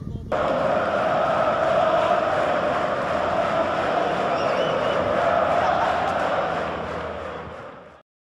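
A large crowd cheering and chanting, starting abruptly a fraction of a second in and fading out near the end.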